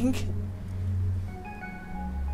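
Background film score: a sustained low synth drone, with thin held organ-like notes coming in about halfway through.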